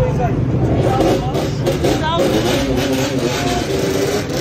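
Motorcycle engines running among a crowd of riders talking over them.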